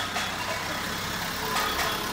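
Mitsubishi Fuso Canter box truck driving slowly past at close range, its engine running with a steady low rumble, with a few sharp percussion clinks over it.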